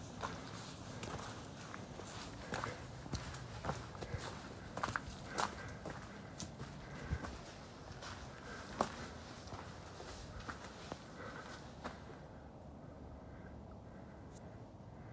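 A hiker's footsteps on a dirt trail strewn with dry leaf litter: irregular crunches and scuffs, a few a second, which fade out about twelve seconds in.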